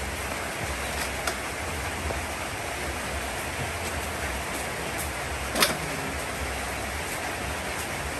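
Steady rushing background noise, with a few faint clicks and one sharp click about five and a half seconds in.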